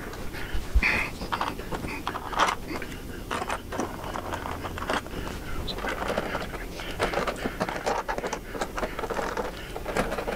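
Scattered small clicks, taps and scrapes of hand work as the bolts of a motorcycle's batwing fairing are fitted, with no steady rhythm.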